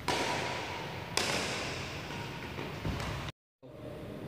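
Badminton rackets hitting a shuttlecock in a rally: two sharp hits about a second apart, each ringing out in a large hall, with fainter knocks after them. The sound cuts out abruptly for a moment shortly before the end.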